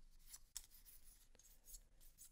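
Magic: The Gathering cards handled: a faint card slide with a few soft ticks as cards are passed one by one from one stack to the other.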